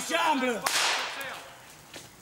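A man's voice, then a sudden sharp crack with a hissing tail that fades over about half a second, about a third of the way in.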